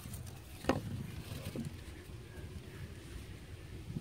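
A sharp wooden knock about 0.7 s in, then a fainter one a second later, from handling the stick-and-rope trigger of a pallet-wood trap.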